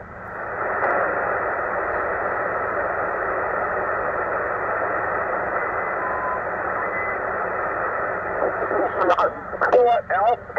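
Tecsun PL-990x shortwave receiver in lower sideband on the 40-metre amateur band, giving a steady hiss of band noise from its speaker as it is tuned by hand. A short faint tone is heard about six seconds in, and a sideband voice starts to come through near the end.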